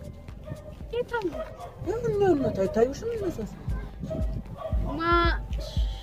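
People talking, with music in the background. About five seconds in, a short wavering bleat-like cry.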